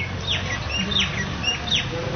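Birds calling: a quick string of short downward-sliding chirps mixed with brief level notes, several in two seconds.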